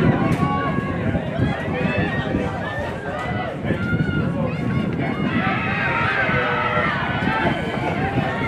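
Several people talking at once near the microphone, overlapping indistinct voices of sideline spectators at an outdoor rugby match, with no single clear voice.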